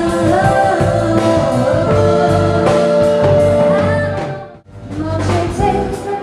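Woman singing with a live band of drum kit, electric bass and keyboard, holding long notes. About four and a half seconds in the music drops out briefly, then a different song starts.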